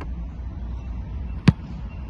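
A single sharp thump of a foot striking an American football in a punt, about one and a half seconds in, over a steady low background rumble.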